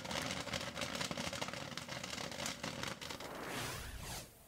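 Freshly popped popcorn tumbling and spilling across a stainless steel bin, a dense crackling rustle of many light pieces. A swelling whoosh comes in near the end.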